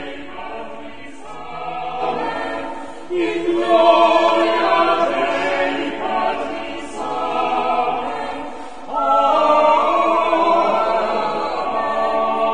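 Church choir singing in phrases, swelling louder about three seconds in and again about nine seconds in.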